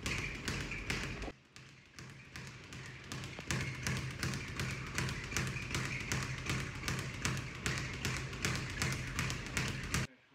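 A leather speed bag being punched and rebounding off its overhead board: a fast, continuous run of rhythmic taps. It drops briefly quieter about a second in.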